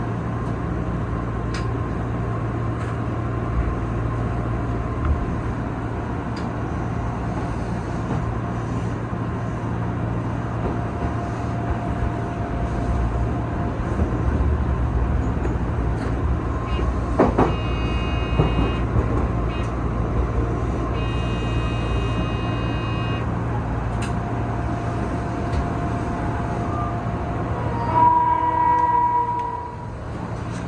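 Inside the cab of an Odakyu 8000 series electric train running and slowing into a station: a steady rumble of wheels and traction equipment with faint steady whining tones, a few high chime-like tones in the middle, and a brief, loud pitched tone about two seconds before the end.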